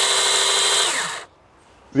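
AL-KO battery mini chainsaw running unloaded at full speed with a steady, high whine. About a second in the trigger is released and the motor and chain spin down, the pitch falling away.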